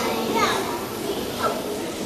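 Children's voices talking, with no clear words.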